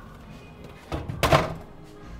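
Background music playing, with one brief thump a little past a second in.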